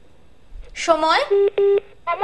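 Two short steady telephone beeps on a call-in phone line, back to back in the second half, just after a brief spoken sound.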